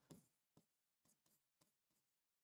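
Very faint taps and scratches of a stylus writing on a digital board's screen: a few short strokes, the first just after the start the loudest, then weaker ones about every half second.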